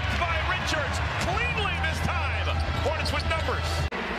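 Live basketball game sound: a ball dribbled on a hardwood court, with many short sneaker squeaks and sharp ball bounces over crowd noise and a steady low hum of arena music. All of it cuts off abruptly just before the end.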